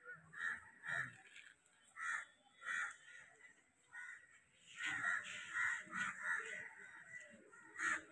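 Crows cawing faintly in a series of short, repeated calls, bunched more closely around the middle.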